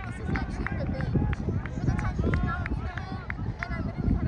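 Indistinct, distant shouting voices calling out in short bursts across an open field, over a steady rumble of wind on the microphone.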